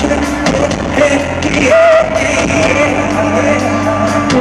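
Live pop-rock band playing with a male lead vocalist singing into a microphone. A held, wavering note comes a little before halfway, over guitar, keyboard and regular drum hits, heard from among the audience in a large hall.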